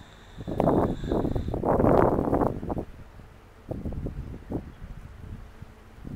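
Wind buffeting the microphone in rough gusts: a strong bout in the first half and a weaker one around four seconds in.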